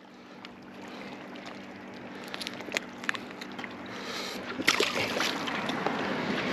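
Water sloshing and splashing against shoreline rocks, growing slowly louder, with scattered light clicks and taps from about two seconds in.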